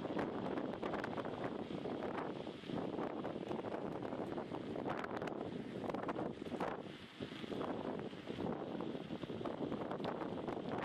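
Wind buffeting the microphone of a camera on a moving bicycle, rising and falling in gusts, with a dip in the noise about seven seconds in. Frequent small clicks and rattles run through it.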